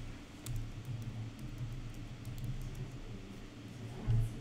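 Computer keyboard being typed on: faint, irregular key clicks in a quick run, over a low steady hum.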